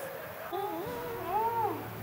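A high, wavering, meow-like cry starting about half a second in and lasting just over a second, ending in a rise and fall of pitch.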